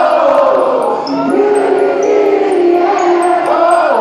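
Live rock band music heard from within the audience, with the crowd's voices loud over it, shouting and singing along.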